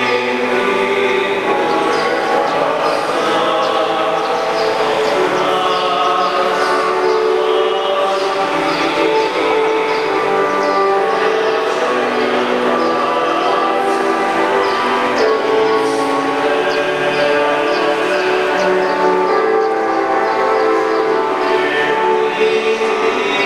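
Choir singing, many voices holding long sustained chords at a steady level.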